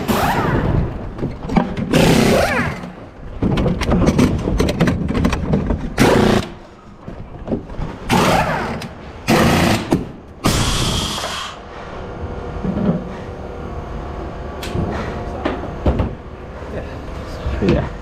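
Pneumatic wheel guns firing in short, loud bursts during a practice wheel change on an Oreca LMP2 race car. A longer hiss of air near the middle comes as the car is dropped off its air jacks.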